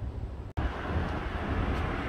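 Outdoor street ambience, a low steady rumble with some hiss. It cuts out for an instant about half a second in, then carries on with a little more hiss.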